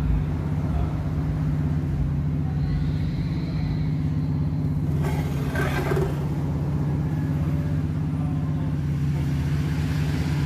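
Krisbow bench drill's electric motor running steadily with a constant hum. A brief rustle of handling comes about five seconds in.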